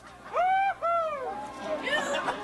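High-pitched hooting laughter: two long calls that rise and fall in pitch in the first second or so, then softer laughing voices.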